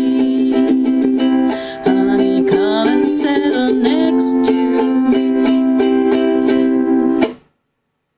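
Ukulele strummed in a steady rhythm, playing out the end of a song, with a brief lull about two seconds in. The playing cuts off suddenly near the end.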